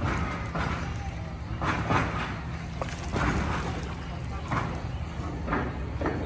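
Indistinct voices over a steady low hum, with scattered short noisy sounds.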